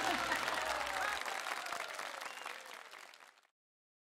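Audience applauding after a live band's song, with a few voices in it, fading out to silence just over three seconds in. A low hum underneath stops about a second in.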